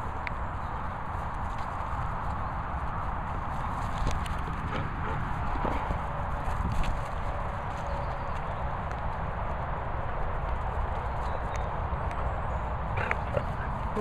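Dogs moving about on grass, with soft footfalls and scattered light knocks over a steady rushing outdoor noise.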